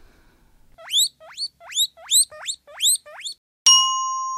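Eight short rising whistles, about three a second, followed near the end by a sudden bright chime that rings on.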